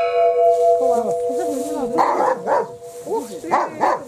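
A hanging metal cylinder used as a bell rings on after a single strike, a steady two-note tone that slowly fades. A dog barks over it several times, and voices are heard.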